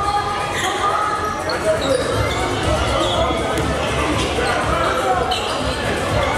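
A basketball bouncing on a hardwood gym floor during play, a series of sharp thuds that echo in the hall, over players' and spectators' voices.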